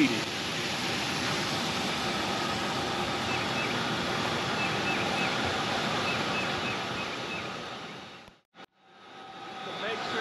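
Steady rushing noise of an activated-sludge treatment basin's equipment and moving water, outdoors at the plant. The sound drops out almost entirely for a moment about eight and a half seconds in, then comes back.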